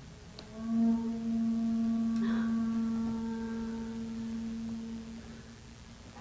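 A single sustained, pitched stage sound cue swells in under a second in, holds steady for about four seconds, and slowly fades out as the lights go down.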